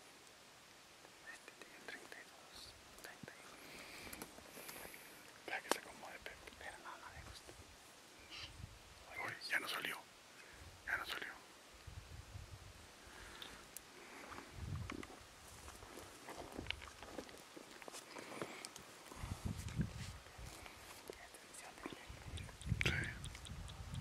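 Quiet whispering voices, with scattered soft clicks and low rumbles of handling noise on the microphone.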